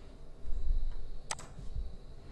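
A single sharp computer mouse click a little past halfway, over a low background rumble and a faint steady high whine.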